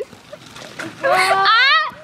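A child crying: a loud, high wail begins about halfway through, climbs, and then falls away sharply.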